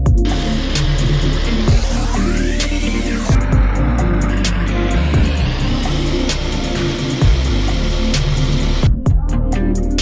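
Personal bullet-style blender motor running under load, blending frozen berries, dates and oat milk into a smooth purée, over background music; the motor cuts off about nine seconds in.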